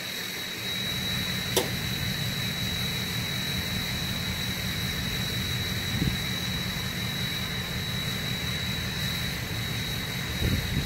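Car hood being opened: a sharp metallic click as the latch releases about a second and a half in, then a dull knock around six seconds as the hood goes up. Under it runs a steady low rumble and a constant thin high tone.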